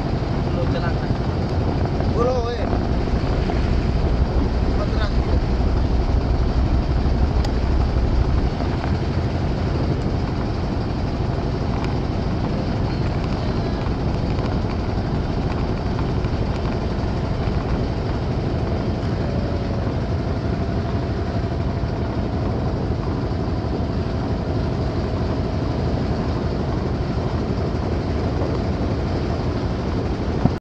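Small boat's engine running steadily, a low drone that is a little louder for the first eight seconds or so.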